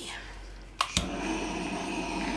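Handheld butane torch lighting with two sharp clicks about a second in, then hissing steadily as it runs, the usual step of torching a wet acrylic pour to bring up cells and pop bubbles.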